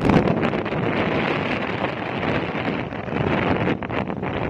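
Wind buffeting the microphone of a moving motorcycle: a steady, loud rush of noise.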